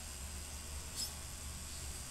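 Steady background hum and hiss of a desk microphone's room tone, with one brief, high-pitched tick about a second in.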